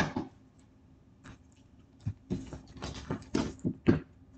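Tarot cards being handled and shuffled in the hands. A single click right at the start, then a quiet spell, then a quick irregular run of soft card slaps and rustles over the last two seconds.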